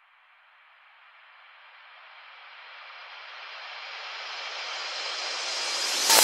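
Reversed synthesizer noise sweep from a psytrance track, a hissing swell that rises in pitch and grows steadily louder.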